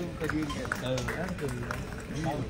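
Speech: several people talking at close range, their voices overlapping.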